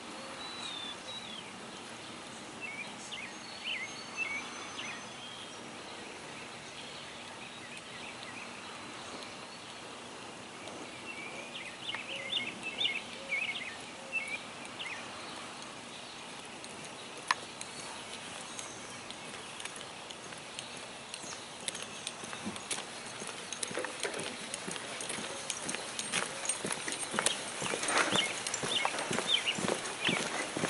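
Birds chirping, then the footsteps of a uniformed color guard marching along a paved path, a run of hard heel strikes that grows louder over the last several seconds as they come close.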